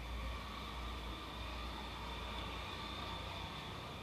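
Steady background noise between spoken phrases: a low hum under a faint even hiss, with no distinct event.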